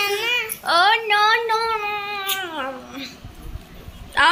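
Young child's high-pitched sing-song voice: a short wavering call, then one long drawn-out call of about two seconds that falls in pitch at the end.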